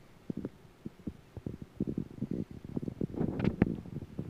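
Irregular soft knocks and clicks of handling, dull and low at first, with a cluster of sharper clicks about three and a half seconds in.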